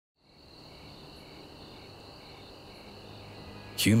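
Crickets chirping steadily in a night-time ambience, fading in at the start. A high continuous trill is joined by a slower chirp about twice a second.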